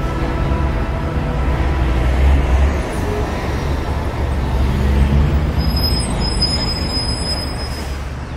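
City street traffic: a steady road rumble with vehicles going by, swelling twice, about two and five seconds in. A thin high whine sounds in the last couple of seconds.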